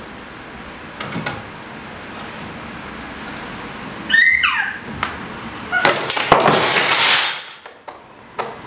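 Rubber straps that hold a wooden frame together, strained by hand: a loud squeak falling in pitch about four seconds in, then about a second and a half of loud, noisy rattling and scraping as the stretched rubber gives way and the frame comes apart.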